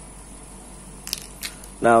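Faint handling noise with two short light clicks about a second in, from a motorcycle brake master cylinder being turned over in the hand, over low background hiss. A man's voice starts near the end.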